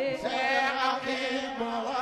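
Sufi zikr chanting: voices singing a devotional refrain in held, wavering notes.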